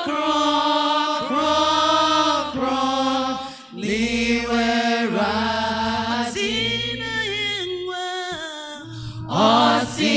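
Voices singing a slow, chant-like melody in long held notes over keyboard and bass guitar, with a short break between phrases about four seconds in.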